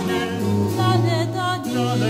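Choir singing an 18th-century Spanish-colonial villancico in the galant style, several voices with vibrato over a low held bass line.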